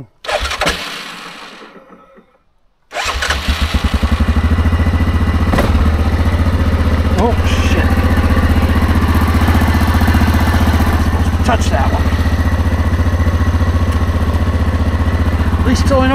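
Yamaha Grizzly ATV engine being started about three seconds in, after a short silence, then running steadily, with a few light clicks.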